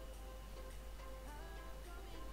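Faint background music: a soft melody of short notes over a light ticking beat.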